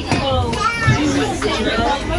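Overlapping, indistinct voices of several people talking at once, with one higher voice standing out near the middle.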